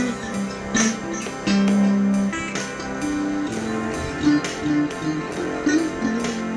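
Electric guitar playing a slow lead melody, single notes picked and held, one sustained for nearly a second.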